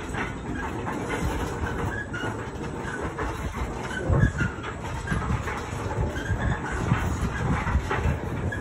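A carousel turning: a steady rumble and clatter from the rotating platform and its drive, with a few louder knocks.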